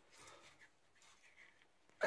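Near silence, with faint rubbing from a hand handling the steel support arm of a barbell rack, a little louder in the first half second.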